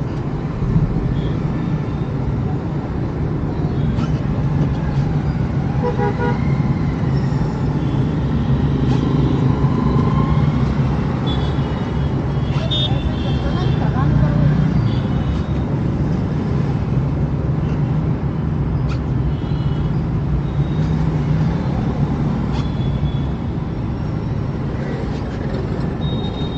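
Steady engine and road hum heard inside a Tata car's cabin in slow city traffic. Short horn toots from other vehicles sound now and then, several of them around the middle.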